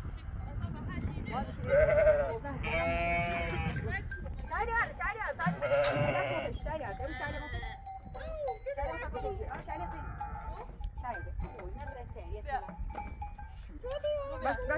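A pen of sheep and goats with their young lambs and kids bleating, several calls overlapping. One long quavering bleat comes a few seconds in, followed by shorter calls.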